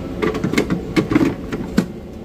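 Plastic blender jar knocking and clicking as it is set down and seated in a frozen-drink blending machine: several sharp clatters, the loudest one near the end.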